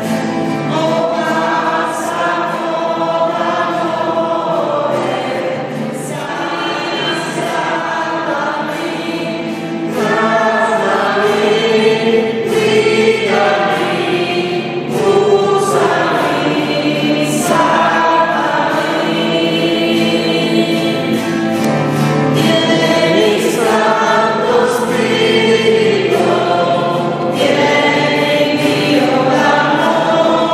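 A choir singing a Christian song of praise, sustained phrases that swell a little louder about a third of the way through.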